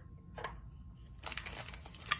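A soft click about half a second in, then, in the second half, the crinkling of foil trading-card pack wrappers as a hand picks them up.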